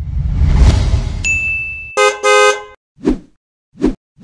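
Edited sound effects: a loud whoosh swelling and fading over the first two seconds with a high steady ding joining about a second in, then two short horn-like honks, followed by two short thumps near the end.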